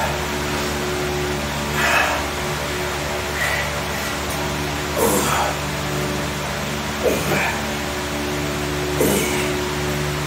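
A man's forceful breaths and short strained grunts, one roughly every two seconds, falling in pitch, in time with the reps of a seated dumbbell curl, over a steady hum.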